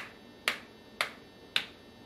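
A steady quarter-note beat of sharp clicks, about two a second, four clicks in all, keeping time for rhythm practice in 4/4.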